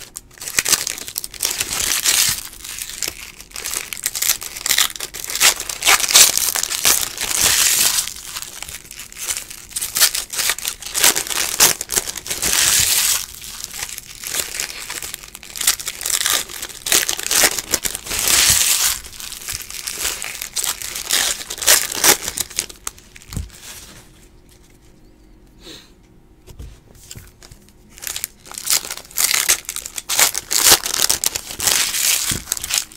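Foil wrappers of 2018 Bowman baseball card packs crinkling and tearing as the packs are opened and the cards handled, in repeated bursts. The sound drops away to a few faint clicks for several seconds near the end, then starts again.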